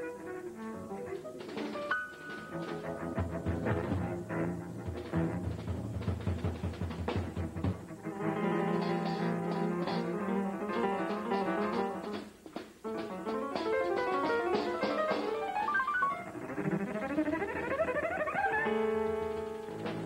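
Jazz trio of acoustic grand piano, double bass and drum kit playing a free improvisation with no set structure. Repeated low notes give way to dense piano runs, and a run climbs steadily upward near the end.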